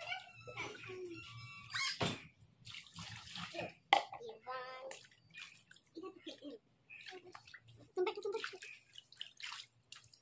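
Water splashing and sloshing in a small inflatable paddling pool as a toddler's hands slap and stir it, in irregular bursts. There is one sharp knock about four seconds in.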